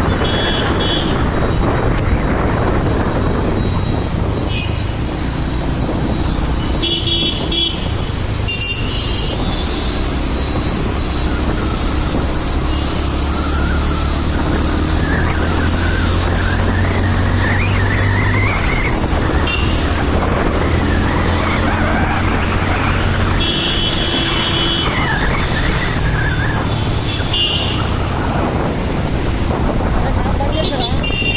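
Riding a two-wheeler through city traffic: its engine hums steadily under constant wind and road noise, while vehicle horns give short toots several times.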